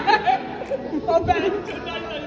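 Several people talking over each other in indistinct chatter.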